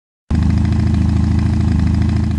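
Motorcycle engine running steadily with a fast, even pulse, cutting in abruptly just after the start.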